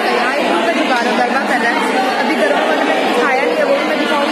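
Many people chattering at once: a steady hubbub of overlapping voices.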